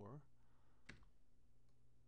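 A single sharp computer mouse click about a second in, with a couple of much fainter ticks after it, over near-silent room tone.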